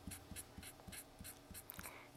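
Bold black permanent marker scratching faintly across quilt fabric in quick short strokes, about four a second, shading one side of a fabric birch trunk.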